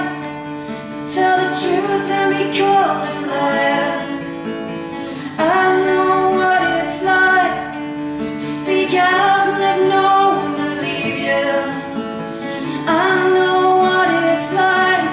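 A woman singing a folk song to her own strummed acoustic guitar, in sung phrases with short breaks between them.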